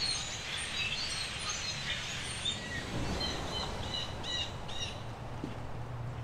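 A large flock of birds calling all at once, a dense chatter of short chirps that thins out near the end. A low steady rumble runs underneath.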